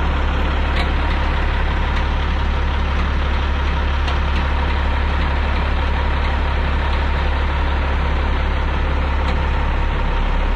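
Heavy-duty wrecker's diesel engine running steadily under load as it powers the winch pulling out a loaded truck: a deep, unchanging drone with a faint steady whine above it.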